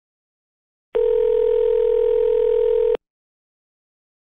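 Telephone ringback tone, the ring a caller hears while the called line rings: one steady two-second tone starting about a second in and stopping sharply.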